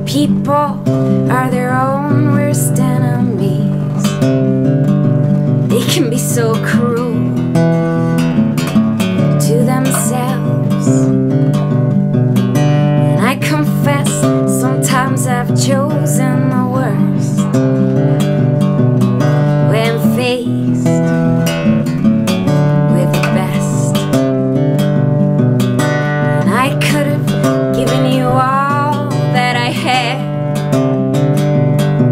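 Acoustic guitar strummed steadily in chords, with a woman singing over it.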